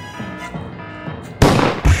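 Music with a steady beat, then two loud explosion-like blasts about half a second apart near the end.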